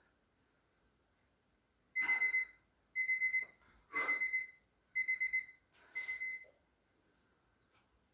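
Electronic interval-timer alarm beeping: five half-second groups of quick high-pitched beeps, one group a second, marking the end of a 30-second exercise interval.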